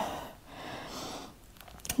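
A person's soft audible breath, a brief hiss lasting under a second, then a few faint mouth clicks just before speaking.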